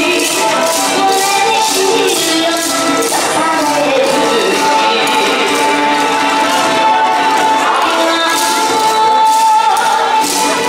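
Upbeat yosakoi dance music with the dry clatter of wooden naruko clappers shaken in time with the beat. The clapping is strongest in the first few seconds and again near the end, and a long held melody note sounds in the second half.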